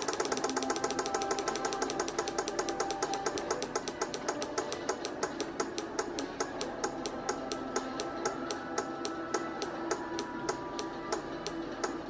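A 12 V DC relay clicking on and off as a square-wave oscillator switches it. The clicks slow steadily from about ten a second to about four a second as the oscillator's frequency is turned down.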